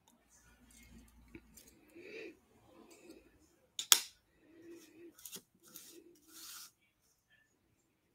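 Textured Floral thin metal cutting dies and cardstock being handled and positioned by hand: light rustling of paper and small metallic clicks, with one sharp click about four seconds in.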